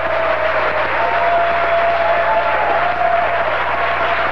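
Audience applauding steadily, a dense, even clatter of many hands with faint drawn-out tones over it.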